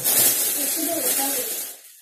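A steady hissing noise with faint voices underneath, dying away near the end.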